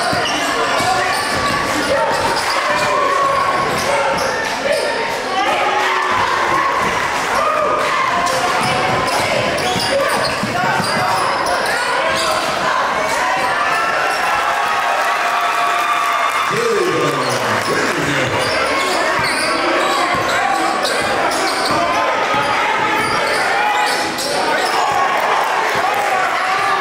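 Live basketball game sound in a gymnasium: a basketball bouncing repeatedly on the hardwood court, under indistinct voices of players and spectators.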